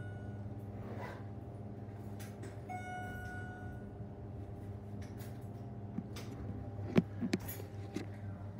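Schindler hydraulic elevator car travelling upward, with a steady low hum throughout. A single chime rings for about a second roughly three seconds in, and there are a couple of sharp clicks near the end.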